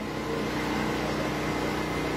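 A steady mechanical hum holding several even tones, growing slightly louder as it begins.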